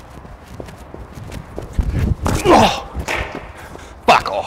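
A cricket fast bowler's running footfalls on artificial turf during his run-up, picked up close by a microphone he wears, as a string of sharp steps. About two and a half seconds in there is a short vocal sound from the bowler.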